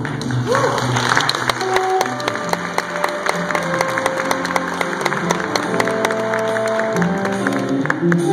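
Jazz quintet playing, with piano and bass carrying on while the audience applauds throughout.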